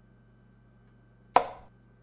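A single sharp knock of a chess piece being set down on a board, the move sound as a knight is played. It comes a little past halfway through and dies away within a third of a second.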